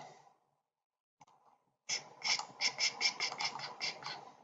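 Computer mouse scroll wheel clicking in a rapid run, about five clicks a second, starting about halfway through and going on to the end.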